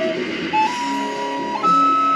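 Wooden recorder playing a slow melody of held, pure notes that step upward: one note ends just after the start, a short note about half a second in, a longer note of about a second, then a jump to a higher note near the end. A lower accompaniment plays beneath it.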